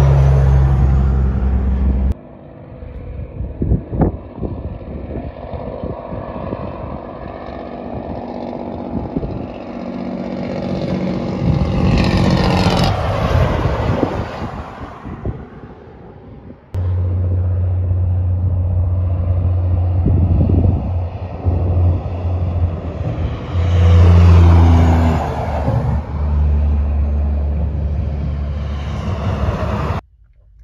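Highway traffic: vehicles passing by, their engine and tyre noise swelling and then fading away, over a steady low engine drone in parts. The sound changes abruptly twice, about two seconds in and just past the middle.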